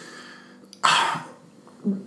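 A single short cough about a second in, from a person at the microphone.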